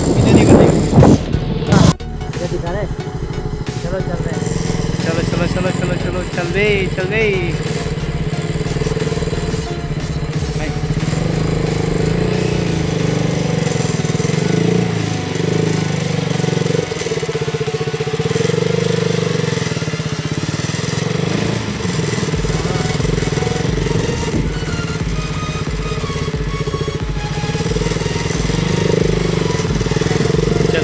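Sports motorcycle engine running steadily while the bike is ridden along a rough dirt track. A loud rush of noise covers the first two seconds, then drops off suddenly.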